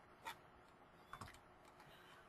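Near silence with a few faint computer clicks: one about a quarter second in and a short cluster just after a second.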